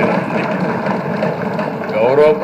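A man speaking Telugu in one continuous stretch, mid-sentence.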